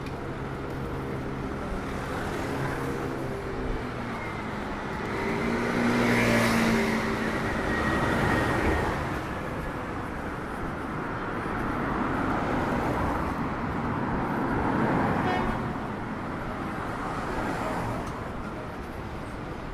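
Street traffic: cars passing along a city street, one swelling and fading about six seconds in and another a few seconds before the end.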